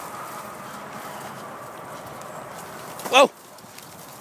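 A loud, short "whoa" shouted by a man about three seconds in, its pitch wavering up and down, over faint steady outdoor background noise.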